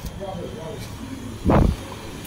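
A single loud, dull thump about one and a half seconds in, as a glass shop door is pushed open and the person walks through.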